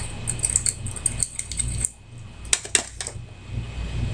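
Metal pipe tool scraping inside a tobacco pipe's bowl, chipping out a lump of hard carbon cake: a run of small scratches and clicks, with a few sharper metallic ticks near three seconds in.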